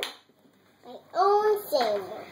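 A young boy's voice: one short, held vocal sound starting about a second in, dropping in pitch at its end.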